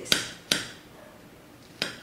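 Metal serving spoon clinking against a glass baking dish as it cuts down through a baked potato soufflé: two sharp clinks in the first half second and a third near the end.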